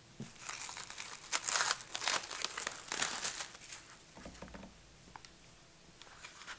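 Plastic cling film crinkling and rustling as it is pulled off a plant pot, in several bursts over the first three seconds or so. It then dies down to fainter handling with a few soft knocks.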